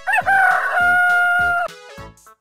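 A rooster crowing once: a short rising opening, then one long held note that cuts off sharply.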